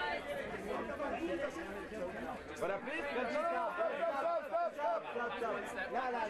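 Photographers' voices calling out and talking over one another in a continuous overlapping jumble, with faint clicks from camera shutters.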